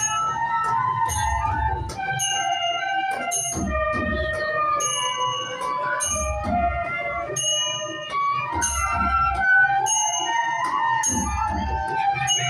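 A group of bamboo flutes (bansuri) playing a traditional Newari melody in unison. A dhime drum beats low strokes every couple of seconds, and bright metallic cymbal-like strikes keep a steady beat.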